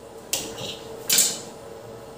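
Two sharp clinks of a kitchen knife striking a stone countertop while dough is cut, about a second apart; the second is louder.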